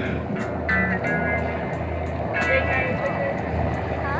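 Steady low rumble of wind on a camcorder microphone, with faint voices and music behind it.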